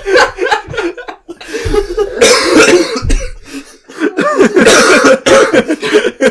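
Several people laughing hard, with coughing breaking through the laughter, in two loud bursts about two seconds and four and a half seconds in.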